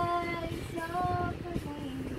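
A high voice, a child's or a woman's, singing a few long held notes that step lower near the end, over a steady low rumble.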